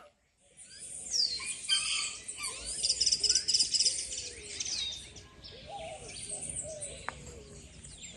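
Several birds chirping and singing at once, with a fast, high trill busiest about three seconds in, over a steady outdoor background.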